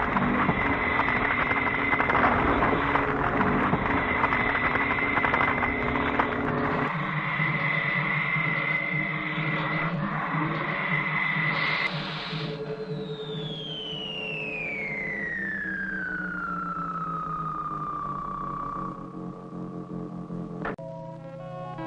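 Electronic science-fiction sound effects: a loud rushing noise with a steady high whine stops about twelve seconds in. A long whistle follows, falling slowly in pitch over about six seconds above a low steady hum.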